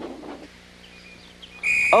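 A conductor's whistle blown in one steady, high-pitched blast, starting near the end.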